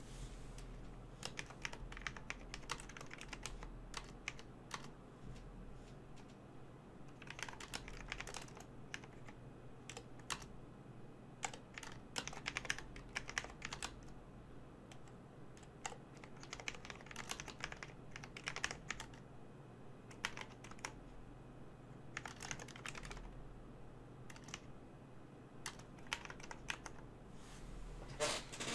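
Computer keyboard typing in bursts of quick keystrokes, with pauses of a second or two between bursts.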